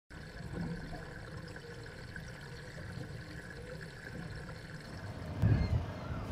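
Steady background of moving water with a low hum underneath, and a brief louder low rumble about five and a half seconds in.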